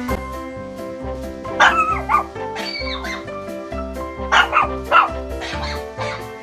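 A dog barking and yipping several short times over background music with a steady beat.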